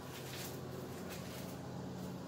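Quiet room tone: a steady low hum over a faint hiss, with no distinct events.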